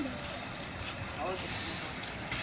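Faint, brief voices, once near the start and again a little past a second in, over steady outdoor background noise.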